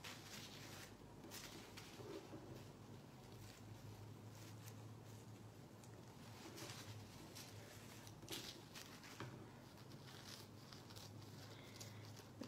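Faint, scattered snips and rustles of scissors cutting through a folded thin plastic trash bag liner, over a low steady hum.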